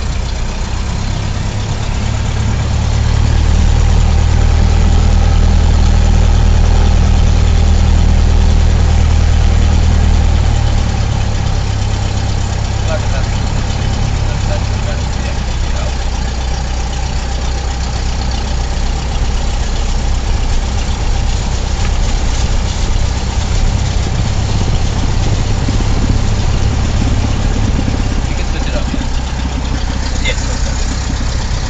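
Cessna 172's piston engine and propeller, heard from inside the cabin while the plane taxis on the ground after landing, running at low taxi power. The engine grows louder about three seconds in and eases back about eleven seconds in, then hums steadily.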